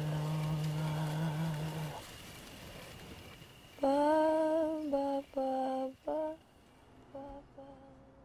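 A voice humming a slow, wordless melody in long held notes: a low note first, then louder, higher notes about four seconds in, broken by short pauses and trailing off faintly near the end.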